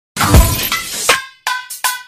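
Edited intro music that opens with a glass-shattering sound effect and a deep falling bass hit. After a short gap come a quick run of short, chiming hits.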